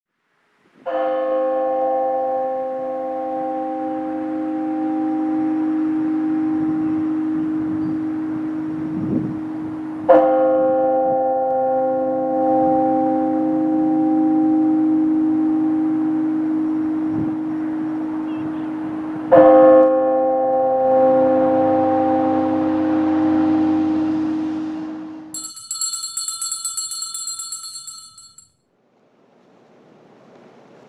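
A large church bell tolled three times, about nine seconds apart, each stroke ringing on with a deep hum into the next. Near the end comes a brief, high shimmering ring lasting about three seconds.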